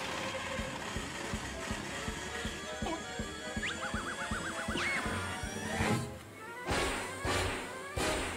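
Cartoon chase score: orchestral music over a fast run of percussive strokes, with a short warbling high tone about four seconds in and a few loud crashing hits near the end.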